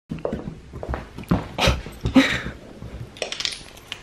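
Light metallic clinking and jingling among scattered knocks and rustles.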